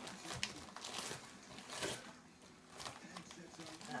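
A dog pulling and tearing at gift wrapping with its mouth: irregular crinkling and ripping of paper, quieter for a moment in the middle.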